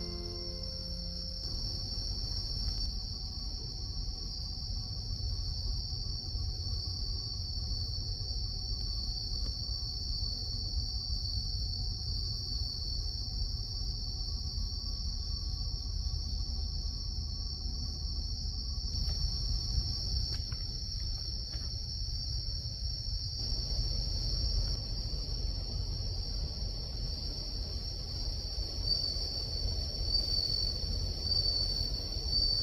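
Crickets chirring steadily, one continuous high trill, over a low rumble.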